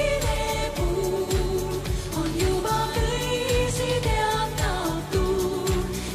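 A woman singing long, held notes in a live pop ballad, backed by a band with a steady drum beat.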